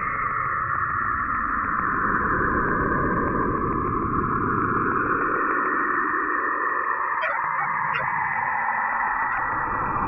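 Synthesized electronic drone with a low rumble underneath, holding steady, with a couple of short chirps about seven and eight seconds in.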